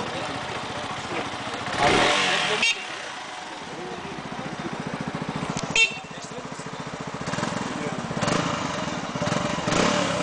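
Kanuni Phantom 180 motorcycle engine idling with a steady, even beat. A louder burst of noise about two seconds in cuts off abruptly, and there is a short sharp click near six seconds.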